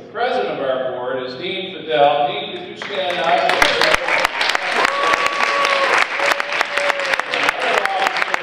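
Audience applause breaks out about three seconds in and carries on steadily, a dense patter of many hands clapping with voices calling out over it.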